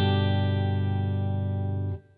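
An open G major chord on an electric guitar ringing and slowly fading, then damped suddenly near the end.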